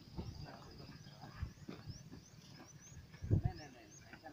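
Faint voices of men talking, with a loud low thump and a voice about three seconds in. Short rising high-pitched chirps repeat about twice a second in the background.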